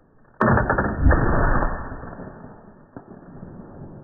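Flintlock long rifle firing: a sharp crack about half a second in, then a heavier boom about a second in that dies away over a couple of seconds in a rumble.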